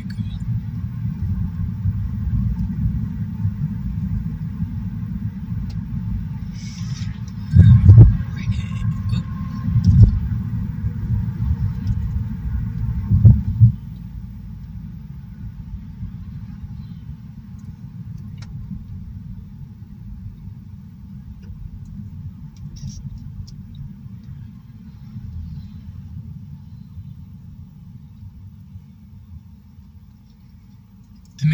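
Road noise heard inside a moving car: a steady low tyre-and-engine rumble, broken by three loud thumps about eight, ten and thirteen seconds in. After that the rumble drops to a quieter level as the car slows in traffic approaching a signalled intersection.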